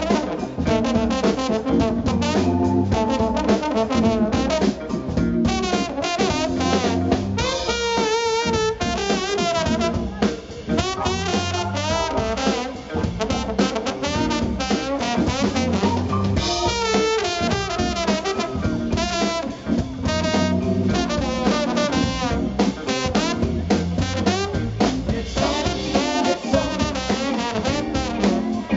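Soul-blues band playing an instrumental passage live: brass horns over a drum kit.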